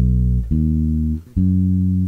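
Fender electric bass playing single fingered notes about a second apart, each held and then cut off just before the next: the B, D sharp, F sharp notes of the B part of a beginner quarter-note blues bass line in E.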